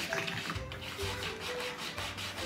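Hand sanding of a wooden surface with a sanding block: quick, rhythmic back-and-forth strokes. A faint melody runs underneath.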